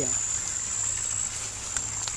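An insect's steady high-pitched call, of the kind crickets make, with a low steady hum underneath and a faint click near the end.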